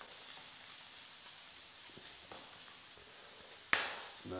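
Vegetables frying in a very hot wok, a steady faint sizzle, with a few light knife taps on a wooden chopping board and one sharp knock on the board near the end.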